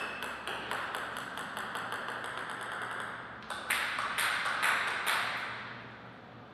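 A table tennis ball bouncing: a quick series of light clicks for about three seconds, then about five louder bounces roughly half a second apart.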